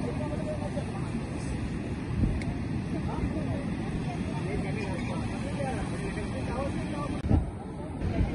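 Indistinct voices of people talking in the background over a steady low rumble, with a short knock near the end.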